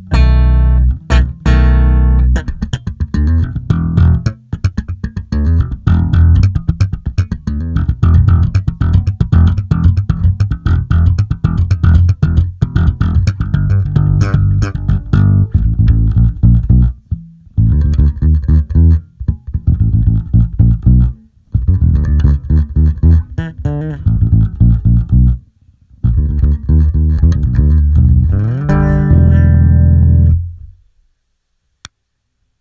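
Six-string electric bass played fingerstyle through a bass preamp pedal: a run of quickly plucked notes with short gaps in the phrasing in the second half.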